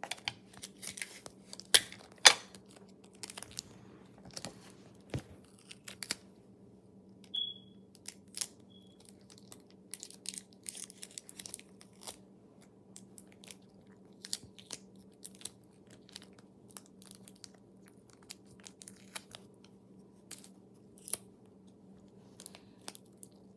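Hands handling cut paper pieces and clear sticky tape on a wooden tabletop: irregular crinkles, taps and tearing, loudest about two seconds in, over a faint steady hum.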